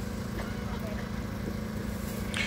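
A steady low hum with a rumble underneath, holding at an even level with no clear events.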